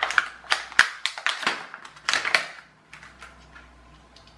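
Stiff plastic blister packaging crackling and snapping in quick, irregular clicks as a light-up stick is pulled out of it. The crackling stops a little under three seconds in.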